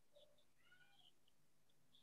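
Near silence, with one very faint, short high-pitched call lasting about half a second, in the first half.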